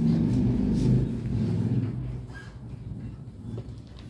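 A low, steady-pitched motor drone, loudest in the first two seconds and then fading away.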